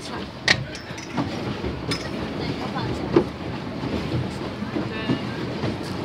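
Pedal boat being pedalled: a steady low rattling rumble from its pedal and paddle mechanism churning the water, with two sharp knocks, about half a second in and about three seconds in.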